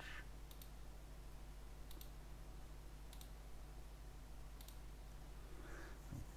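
Four quiet computer mouse clicks, each a quick double click of press and release, about every second and a half, over a faint steady low hum. These are Ctrl+right-clicks extruding new vertices in Blender.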